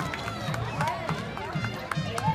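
Horses' hooves clopping irregularly on asphalt as several horses walk past, with voices in the background.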